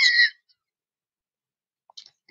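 The end of a spoken word in the first third of a second, then dead silence for the rest.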